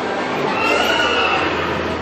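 A horse whinnying once, a high call lasting about a second.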